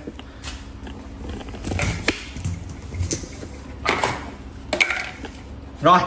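A few scattered knocks and clicks of hard objects being handled over a low background hum; the vacuum cleaner is not yet running.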